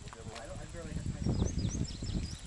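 A brief voice sound near the start, then a quick run of high bird chirps from about a second in, over low rumbling noise on the microphone.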